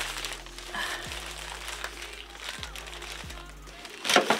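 Background music with a deep bass whose notes slide down in pitch several times, under faint rustling of small fabric bags being handled.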